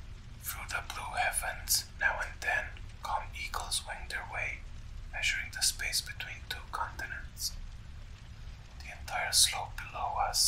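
Whispered storytelling, with a short pause about three-quarters of the way through, over a faint, steady low rumble of background ambience.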